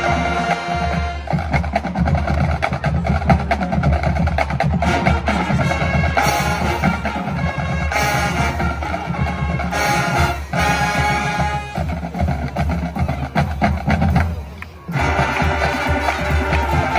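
High school marching band playing, with sustained brass chords over drums and front-ensemble percussion. The sound drops out briefly about a second before the end, then the full band comes back in.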